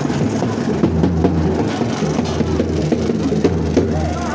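Processional drums beating fast and loud, over a steady low engine hum.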